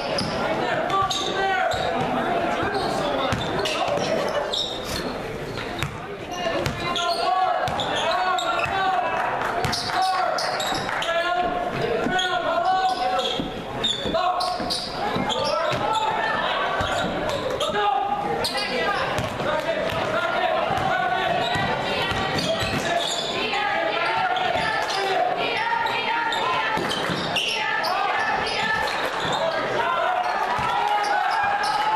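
Basketball game sounds in a gym: the ball bouncing on the hardwood floor over steady, indistinct crowd chatter, echoing in the large hall.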